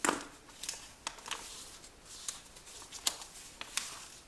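A sheet of paper being handled and creased by hand in origami folding, with short, scattered crisp crackles and rustles. A sharper tap comes right at the start.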